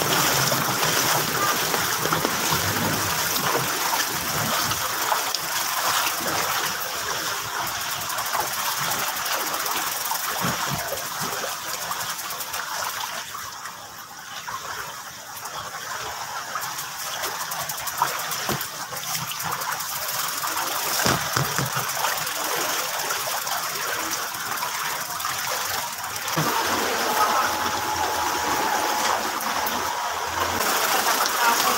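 Steady rushing and splashing of floodwater, with a brief drop in level about halfway through.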